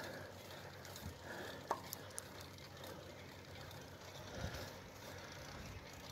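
Faint riding noise from a bicycle climbing a paved road: a low steady hiss, with a few light clicks about two seconds in.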